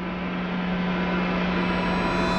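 A droning transition sound effect swelling up from silence: a steady low hum under a rising hiss, levelling off about halfway through.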